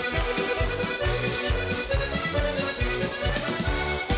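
Heligónka (Slovak diatonic button accordion) playing a lively, brisk folk tune over drums, with a steady beat of about two strokes a second.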